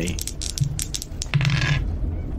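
Dice being rolled and clattering on a hard surface: a few sharp clicks, then a short rattle near the end.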